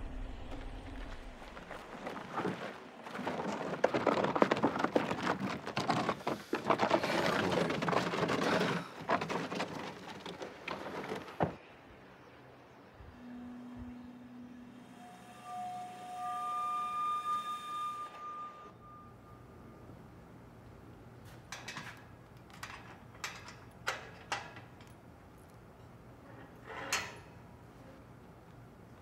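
Film soundtrack without dialogue: a long stretch of loud, rough noise, then a few held musical notes, then scattered sharp clicks and knocks near the end.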